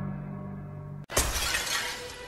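Low held music notes fading out, then about a second in a sudden loud crash of shattering glass that trails off.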